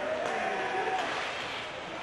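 Ice rink game noise, a steady background of crowd and arena sound, with a faint voice holding a drawn-out note over the first second or so.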